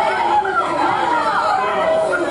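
Overlapping voices in a courtroom, with a distraught young man crying out and pleading while others talk around him.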